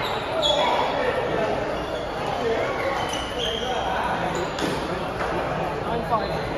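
Table tennis balls clicking off bats and tables, a few sharp knocks, over background talk in a large, echoing hall.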